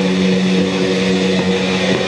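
Live heavy metal band holding one sustained, droning note on distorted electric guitars and bass.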